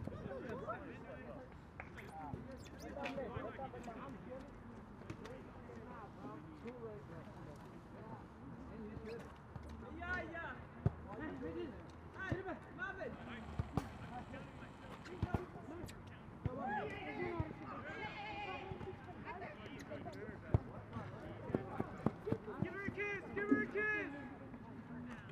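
Players shouting and calling to each other across a field, the voices not close, with scattered sharp thuds in between.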